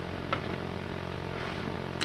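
Steady low background hum with a faint click about a third of a second in.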